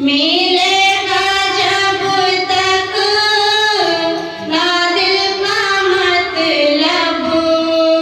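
A female voice singing an Urdu naat solo in long, held melodic lines, with a wavering vibrato on the sustained notes and a brief breath partway through.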